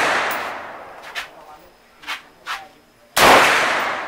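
Single shots from an M16 rifle: the echo of a shot just fired dies away, then one loud shot about three seconds in rings out with a long echoing tail. Three fainter short cracks fall in between.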